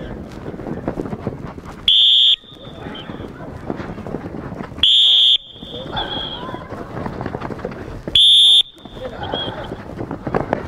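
A coach's whistle blown in three short, shrill blasts about three seconds apart, each the start signal for the next child in a running relay. Between blasts, children's and adults' voices and running feet.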